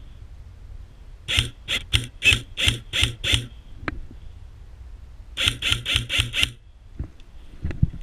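Airsoft rifle fired in rapid single shots: a string of about seven sharp pops, then after a short pause a quicker string of five.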